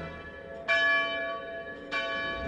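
A church bell struck twice, about a second and a quarter apart, each stroke ringing on.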